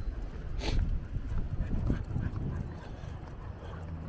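A dog's faint sounds over a low steady rumble, with one sharp click a little under a second in.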